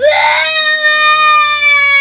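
Small girl crying: one long, loud wail, held and slowly sinking in pitch.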